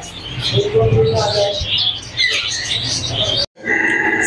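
Caged parrots and other small birds chirping and calling together, over a low steady hum and indistinct voices. The sound drops out completely for a moment near the end.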